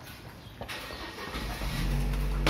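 A motor vehicle engine running, growing louder through the second half with a steady low hum.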